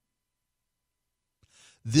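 Dead silence for over a second, then a short, faint breath in and a man's voice starting again just before the end.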